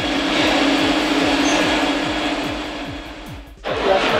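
Background music with a steady, quick bass-drum beat under a steady whirring noise. Both fade out briefly near the end before a cut to a hall full of voices.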